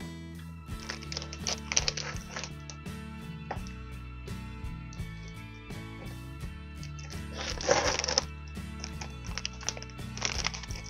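Background music playing under the rustle of a clear plastic wrapper and cardboard as a wrapped binder is handled. The rustling comes in two spells, about a second in and again near eight seconds.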